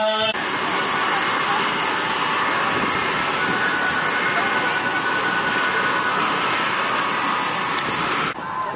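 Singing and music cut off abruptly just after the start, giving way to a steady hiss of outdoor noise with faint voices in it.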